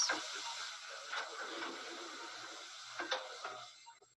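Steady hiss and room noise from the sound track of a played-back clinic hallway recording, with two faint knocks, about a second in and again near three seconds; the hiss fades out near the end.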